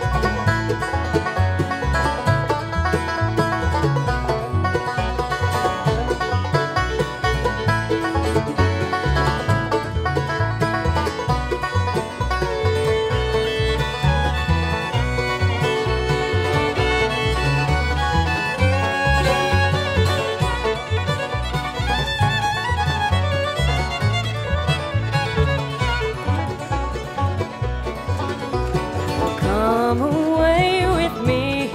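A bluegrass string band plays an instrumental break: a five-string banjo picks the lead at first, and a fiddle takes the lead by about halfway with long held bowed notes. Mandolin, guitar and upright bass keep an even plucked beat underneath.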